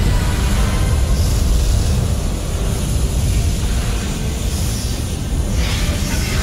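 A flamethrower blasting a long continuous jet of fire: a loud, steady rush with a heavy low rumble that swells again near the end. A film score plays underneath.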